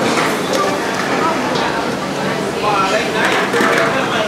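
Voices talking in a busy eatery, with a few knocks and clinks of metal ladles and bowls at the cooking station.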